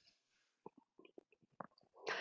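Near silence: a pause with only a few faint, short ticks.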